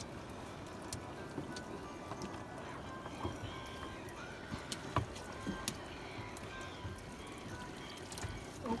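A set net being hauled in by hand over the side of a boat: water dripping off the mesh and seaweed, with scattered light knocks and drips, the clearest about five seconds in.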